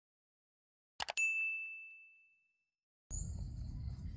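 Intro sound effect: a quick pair of clicks, then a single bright bell ding that rings out and fades over about a second and a half. Near the end it cuts to outdoor ambience: low rumble with steady high insect chirring.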